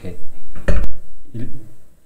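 A sharp knock of hard objects being handled, about two-thirds of a second in, with a smaller click right after it.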